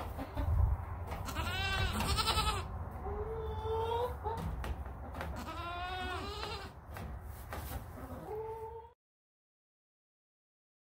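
Goats bleating, several calls in turn, some high and arching up and falling, others lower and wavering, over a low rumble; the sound cuts off about nine seconds in.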